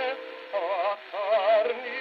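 A 78 rpm shellac record playing on an HMV Model 157 acoustic gramophone. The music has wavering vibrato notes and a thin, narrow sound with no deep bass or high treble, typical of an early acoustically recorded disc.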